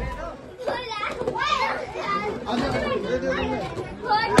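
Overlapping chatter and calls of a group of young children mixed with adult voices, none clear enough to make out words.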